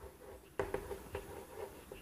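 Chalk writing on a blackboard: a few faint, short taps and scrapes as the letters are formed.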